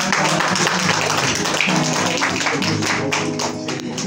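A small group clapping, dense and irregular, over an acoustic guitar playing steady low notes.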